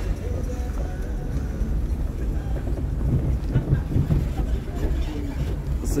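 Steady low rumble of a car driving slowly, heard from inside the vehicle.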